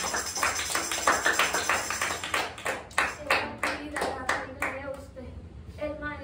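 Several people clapping hands, quick and dense at first, then slowing to scattered single claps that die out about five seconds in, with voices underneath.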